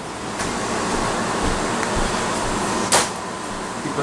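A steady hiss of background noise, with one sharp click about three seconds in.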